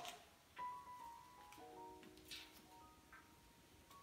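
Faint, soft background music of held, overlapping notes, with a few faint crackles of hands pulling apart a taro plant's root ball in soil.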